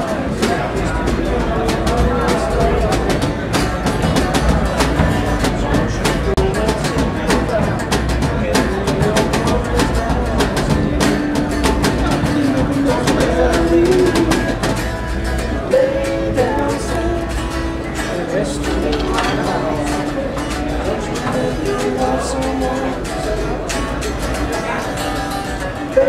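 Live blues band playing: guitar lines with bent notes over a drum kit, with cymbal and drum hits throughout.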